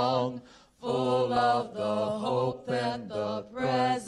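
A woman singing without accompaniment into a microphone, holding long notes with a little vibrato, in phrases broken by short pauses and a brief silence about half a second in.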